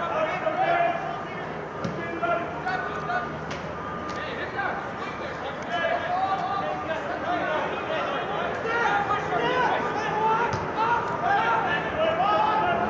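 Several voices shouting and calling over one another across a soccer pitch, too distant to make out words, with a few short knocks in between.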